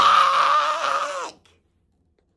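A woman's loud, drawn-out shout of "back!", held for about a second and a half and falling off at the end.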